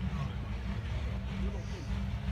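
Low, steady rumble of a vehicle engine running out on the track, with faint voices over it.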